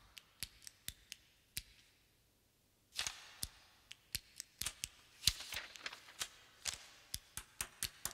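Faint, irregular sharp clicks with two short papery rustles, like book pages being turned, in a hushed room.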